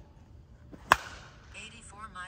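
A one-piece senior slowpitch softball bat striking a softball: a single sharp crack about a second in, followed by a brief ring from the barrel.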